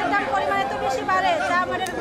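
Speech only: a woman talking, with other voices chattering around her.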